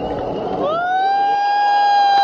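One long horn-like note that slides up about half a second in, then holds steady on a single pitch, part of the show's sound.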